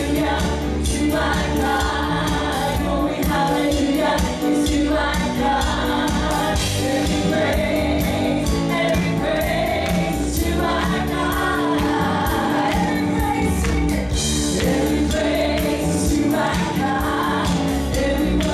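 Live gospel worship song: a woman singing lead with backing singers over electric bass, keyboard and drums, with a steady beat.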